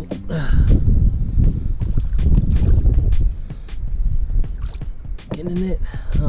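Water splashing and knocking as a hooked redfish thrashes at the surface beside a small boat while a landing net is worked into the water, over a low rumble. A short vocal exclamation comes near the start and another near the end.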